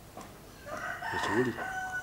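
A rooster crowing, starting a little over half a second in and lasting about a second and a half, with a steady high note held near the end.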